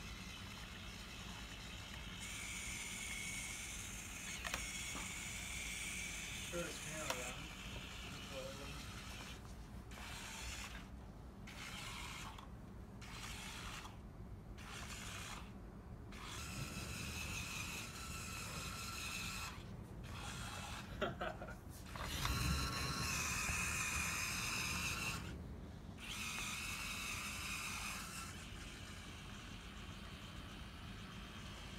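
Hobby servo motors driving a small robot's wheels, whirring in stretches of a few seconds as it turns and drives, with pauses between and a few light clicks.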